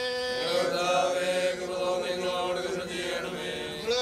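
A group of mourners singing a hymn together in a slow, chant-like way, their voices holding long, drawn-out notes.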